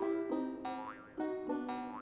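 Light plucked-string cartoon music, a run of short picked notes, with two springy rising boing sound effects as a character bounces.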